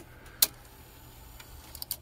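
One sharp mechanical click about half a second in, then a few light ticks near the end, from the Sony DTC-700 DAT recorder's controls and tape mechanism being operated.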